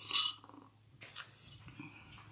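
A short sip from a mug just after the start, followed about a second later by a brief sharp click.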